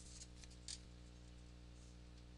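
Near silence with a steady electrical hum, broken by a few faint computer mouse clicks, the clearest about two-thirds of a second in.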